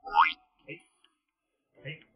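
A short, loud rising 'boing'-like comic sound effect just after the start, gliding up in pitch within a fraction of a second. A man's brief 'ai ai' follows near the end.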